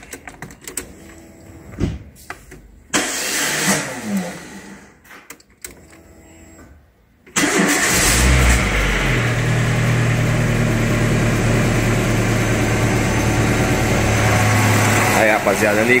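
Renault Kangoo engine being started: it catches abruptly about seven seconds in, after a few clicks and a brief burst of noise, then settles into a steady idle. The owner says the starter motor is starting to fail.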